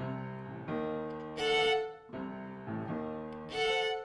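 Violin and grand piano playing a classical duo: the violin plays a bowed melody, rising to a louder held high note about a second and a half in and again near the end, over piano accompaniment.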